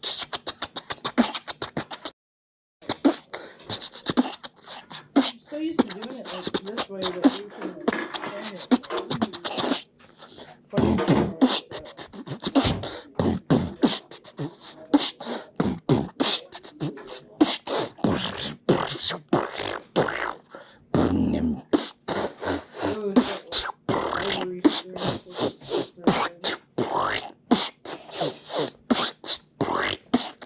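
A man beatboxing in a long continuous flow: rapid mouth-made drum hits, pops and hisses with some voiced sounds between them. It breaks off for about half a second just after two seconds in.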